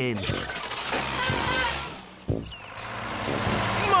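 Cartoon tractor engine running as the tractor sets off, over background music. The sound breaks briefly a little over two seconds in, and a steady tractor engine hum follows.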